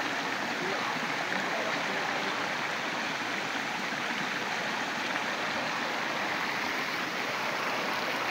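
Shallow rocky stream rushing steadily over and between boulders.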